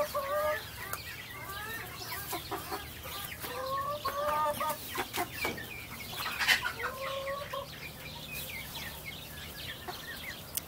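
Domestic chickens clucking, with several drawn-out calls about half a second to a second long among shorter chirps. A sharp click stands out about six and a half seconds in.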